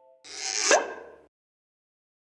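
A short whooshing sound effect, starting about a quarter second in and lasting about a second, with a quick pitch sweep at its loudest point before it cuts off suddenly.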